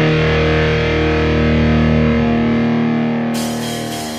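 Rock band recording: distorted electric guitar chords held and left ringing, with no vocals, the level sinking a little toward the end as a brighter hiss comes back in.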